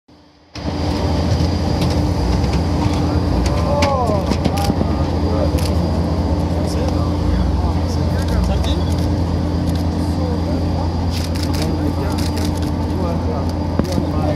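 Steady, loud whining drone of a parked jet airliner running on the apron, with scattered sharp clicks and snatches of voices over it.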